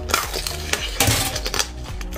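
Crisp crunching as a red chili-pepper-shaped novelty food with a glossy shell is bitten into and chewed, with two loud crunches about a second apart. Background music runs underneath.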